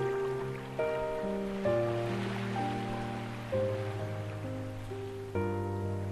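Slow ambient piano music, with new notes and chords struck every second or two and left to ring. Beneath it is a soft wash of ocean waves that swells in the middle.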